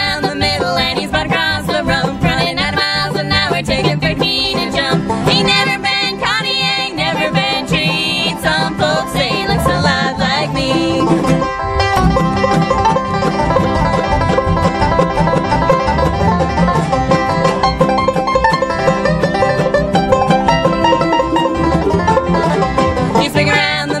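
A bluegrass band playing a fast instrumental break between verses, on banjo, mandolin, guitar, dobro and upright bass. The lead playing changes character about halfway through, and the singing comes back in at the very end.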